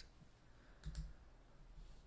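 Two quick, faint computer mouse clicks about a second in, against near-silent room tone.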